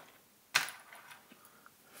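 A set of small steel Allen keys being picked up: one sharp click about half a second in, then faint small clicks and handling noise.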